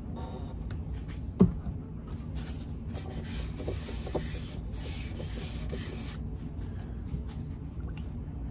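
Paper towel rubbed by hand over a turned wooden shaker blank, working in freshly poured finishing oil: a steady dry rubbing from about two seconds in to about six seconds in. A single sharp knock comes a little after one second in.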